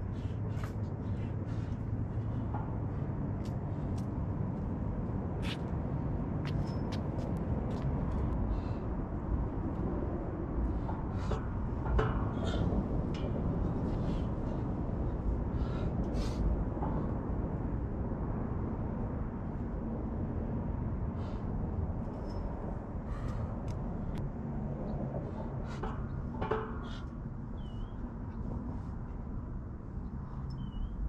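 Outdoor background noise: a steady low rumble, with scattered light clicks and knocks and a couple of faint chirps near the end.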